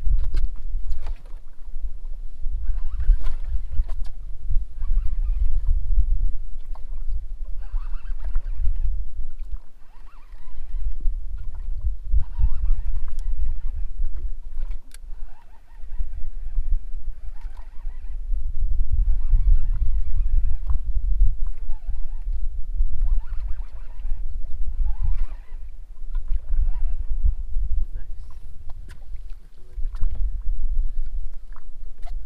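Wind buffeting the microphone on an open boat at sea, a loud, uneven low rumble that rises and falls in gusts and drops away briefly about ten and fifteen seconds in.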